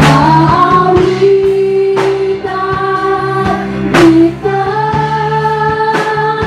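Live worship band playing: a woman sings long held notes over electric guitars, keyboard and a drum kit, with cymbal crashes about every two seconds.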